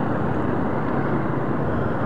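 Motorcycle riding slowly in traffic: a steady, low engine-and-road noise with no sudden changes.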